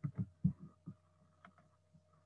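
Soft, irregular thumps and clicks of a computer mouse being worked on a desk, about five in the first second and a couple of fainter ones later, over a steady low electrical hum.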